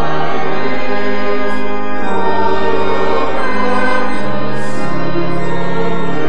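Congregation and choir singing a slow hymn together, with organ accompaniment; the chords are held and change every second or two.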